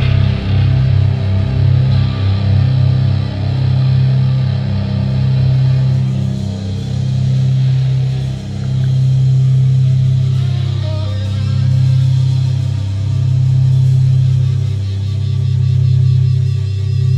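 A rock band playing a heavy, distorted riff live: electric guitar through a Vox amplifier, with bass and drums. The riff chugs in quick low pulses, then about halfway through switches to longer held low notes, roughly one a second.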